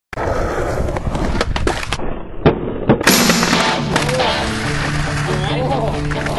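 Skateboard rolling on concrete with sharp clacks of the board, then two hard impacts about two and a half seconds in. Music starts about halfway through.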